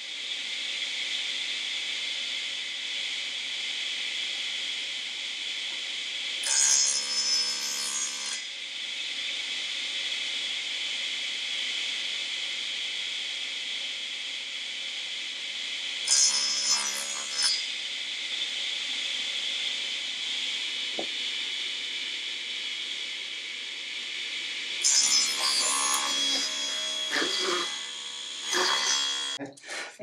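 Table saw running steadily, with three louder stretches as the blade rips through a thin strip of wood. The last and longest cut comes near the end.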